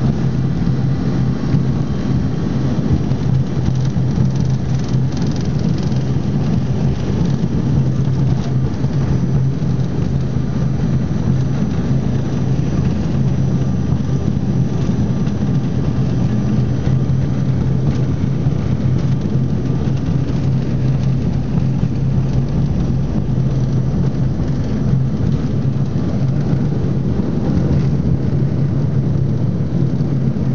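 Steady cabin noise inside an Embraer ERJ-145 regional jet taxiing, with its Rolls-Royce AE 3007 turbofans at idle: an even low rumble with a constant low hum and no rise in power.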